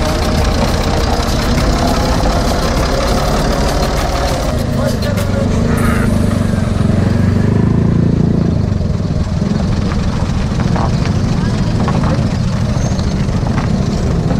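Tractor diesel engine idling steadily close by, a little louder around the middle, with people talking over it.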